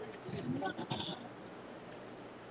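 A faint, brief bleating call lasting about a second, heard over steady background hiss.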